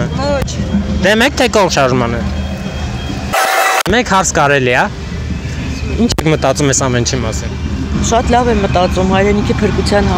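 People talking in Armenian over a steady low rumble of street traffic, broken by a short burst of hiss about three and a half seconds in where the sound cuts.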